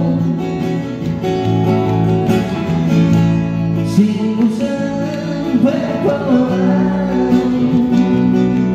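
Live acoustic guitar and Korg Kronos keyboard playing an instrumental passage, with sustained bass notes and chords under a gliding melody line.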